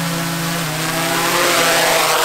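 DJI Mavic 3 quadcopter hovering close to the ground, its four motors and propellers giving a loud, steady multi-toned buzz. The pitch dips a little about a third of the way in, and a rushing hiss of rotor wash grows louder toward the end.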